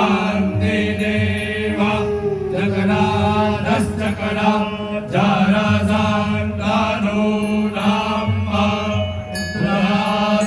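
A group of Brahmin priests chanting Vedic Sanskrit mantras in unison into microphones, in phrases a couple of seconds long, over a steady low drone.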